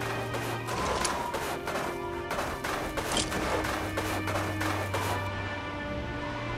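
Background music with sustained tones, overlaid by a rapid, irregular string of gunfire sound effects that stops about five seconds in.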